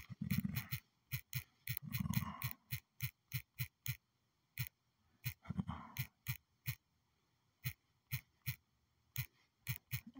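Fingers tapping out a search on a phone's on-screen keyboard: a run of short, sharp clicks, about three a second with brief pauses, and a few low murmured hums in between.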